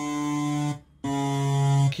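Digital keyboard playing two held notes, each under a second long with a brief gap between them. Both are on the black key between C and D, the note called C-sharp or D-flat.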